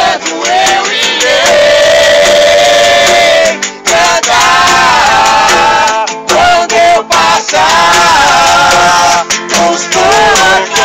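A group of people singing a hymn together to an acoustic guitar, loud and close; the voices hold long notes in phrases with brief breaks between them.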